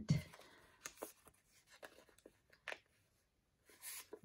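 A small kraft paper bag handled and opened, giving quiet paper rustles and a few soft ticks, with a short rustle near the end as a sticker sheet slides out.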